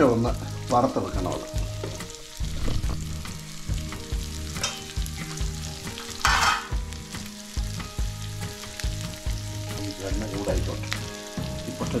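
Chopped onions, garlic and chillies frying in oil in a frying pan, sizzling steadily while being stirred with a wooden spatula, with a brief louder hiss about halfway through.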